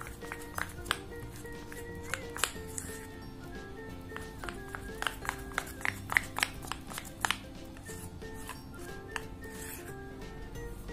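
Light background music with a steady melody, overlaid by many small sharp clicks and taps of a metal spoon stirring a thick shampoo-and-cornstarch slime mixture in a plastic bowl.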